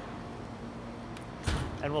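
Steady low hum of brewery equipment, with a single sharp thump about one and a half seconds in.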